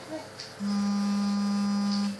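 A steady low electronic tone, with fainter steady tones above it, starts abruptly about half a second in and holds without change.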